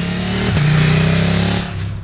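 Husqvarna Norden 901's 889 cc two-cylinder engine running as the motorcycle rides at speed, its pitch stepping up about half a second in.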